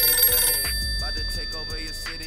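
A smartphone ringing on a table: a loud musical ringtone with several steady high tones and a fast repeating pattern, slowly fading.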